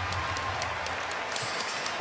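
Steady arena crowd noise during live play, with a basketball being dribbled on the hardwood court as short scattered knocks.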